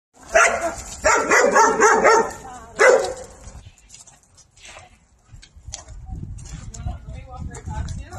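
A dog barking in three loud bouts over the first three and a half seconds, followed by quieter low rumbling noise.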